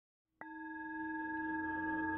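A singing bowl tone that starts suddenly about half a second in and rings on, steady and slowly swelling, with several pitches sounding together.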